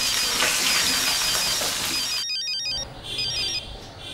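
A mobile phone ringing: a ringtone melody of short, high electronic beeps repeating over and over. About two seconds in the sound changes abruptly and the beeps go on more quietly.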